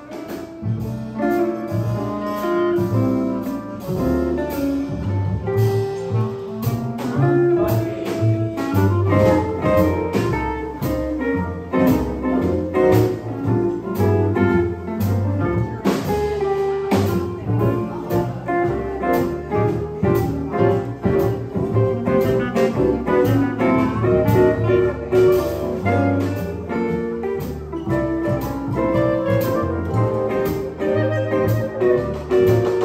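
Small jazz combo playing live: guitar, upright double bass plucked, piano, drums and clarinet, with a steady cymbal beat keeping time.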